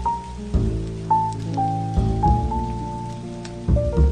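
Slow jazz music, a held melody line over chords that change about every second and a half, with steady rain pattering underneath.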